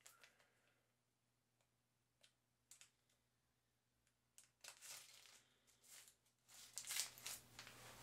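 Near silence, broken by a few faint clicks and then soft crinkling and clicking near the end as a plastic fish-food pouch is handled and opened.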